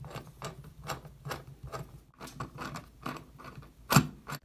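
Phillips screwdriver turning a screw into a steel light-fixture mounting plate: quick, evenly spaced clicks, about four to five a second, with one sharp louder click near the end.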